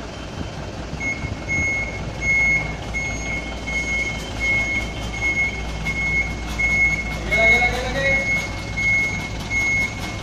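Box truck's reversing alarm beeping at an even pace, about one and a half beeps a second, starting about a second in, over the low running of the truck's engine as it backs up. A brief voice is heard partway through.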